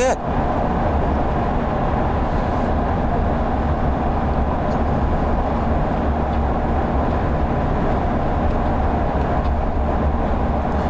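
Steady road and engine noise heard inside a moving vehicle's cabin: an even low rumble with a hiss over it, unchanging throughout.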